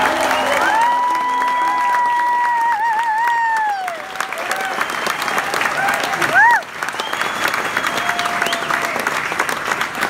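Audience applauding with dense clapping, and high cheers held over it: one long held whoop from about a second in to about four seconds, wavering near its end, and a short sharp one about six and a half seconds in, the loudest moment.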